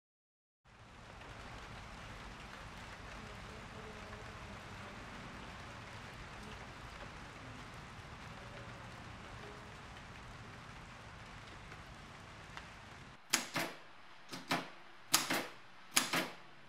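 A steady soft hiss, like light rain. Near the end, the typebars of a manual typewriter strike the paper in about five sharp, loud keystrokes in quick succession.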